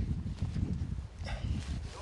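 Wind rumbling and buffeting on the microphone, with a short pitched sound a little over a second in.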